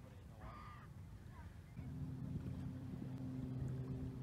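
A crow caws once, briefly, about half a second in. From about two seconds in, a low, steady hum sets in and is louder than the call.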